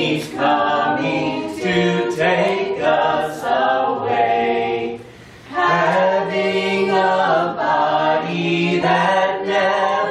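A small group of mixed voices, men, women and children, singing a gospel hymn a cappella in harmony, with no accompaniment. There is a brief pause for breath about five seconds in.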